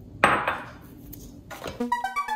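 One loud metallic clank of a hand mixer against a stainless steel mixing bowl about a quarter second in, ringing briefly over a faint steady hum. Keyboard music comes in near the end.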